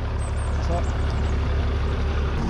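International Harvester (IH) farm tractor engine running steadily at low speed, a constant low rumble.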